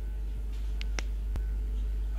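A few short, faint clicks about a second in, over a steady low hum.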